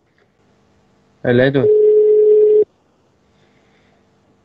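A short spoken syllable, then a steady telephone line tone lasting about a second that cuts off sharply, leaving a faint hum.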